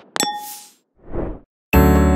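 Transition sound effects: a sharp click, then a bright chime-like ding that rings for about half a second, followed by a short rush of noise about a second in. Electric piano music starts near the end.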